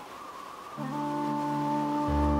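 Instrumental intro of a Chinese ballad: a soft airy swell, joined just under a second in by sustained low notes and a held higher note.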